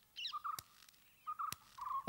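A few faint, short chirps, typical of a bird calling, spread across the moment, with two faint clicks between them.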